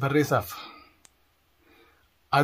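A man speaking; his words trail off about half a second in, followed by a single short click about a second in.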